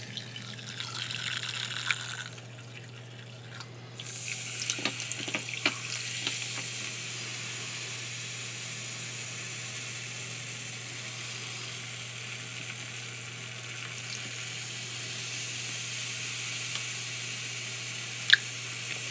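Diet Pepsi poured from a can over a glass of ice: a steady fizzing hiss of carbonation that starts suddenly about four seconds in, with sharp crackling clicks from the ice in the first couple of seconds of the pour. A single click comes before it, about two seconds in.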